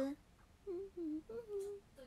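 A woman's short, soft hums with her mouth closed, four in a row, turning into a small laugh near the end.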